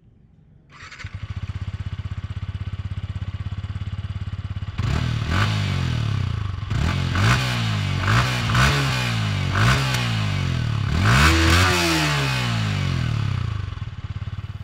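Yamaha YZF-R15M's 155 cc single-cylinder engine started up about a second in, idling steadily, then revved in several short throttle blips, each rising and falling in pitch. Its exhaust note is one the reviewer finds not really solid, as from a small engine.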